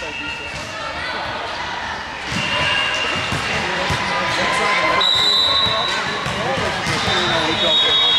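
Volleyball gym ambience: repeated ball thumps and indistinct players' voices and calls.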